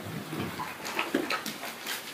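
Sheets of paper being shuffled and lifted at a lectern, a run of short crisp rustles and clicks.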